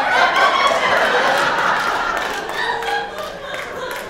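Theatre audience laughing, loudest just after the start and dying away toward the end.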